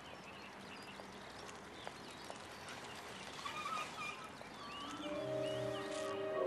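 Quiet outdoor ambience with a few faint, short bird chirps. Background music with sustained, held tones comes in about five seconds in.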